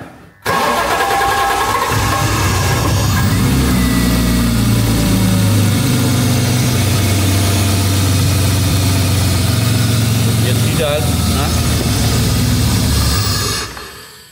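A BMW engine that has stood unused for about eight years being started again: it catches within the first couple of seconds and then runs at a steady idle.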